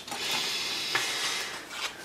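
Gloved hands rubbing and sliding over plastic model-kit parts and the work surface, a steady rustling hiss of about a second and a half with a small click about a second in.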